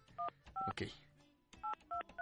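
Touch-tone telephone keypad dialing a number: four short two-note beeps, two in the first second and two more near the end.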